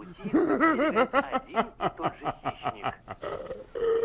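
Hearty laughter: a quick run of short 'ha-ha' pulses that fades toward the end.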